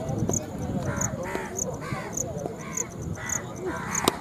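A crow cawing over and over, about two caws a second, with faint voices behind it and a high chirp repeating about every half second.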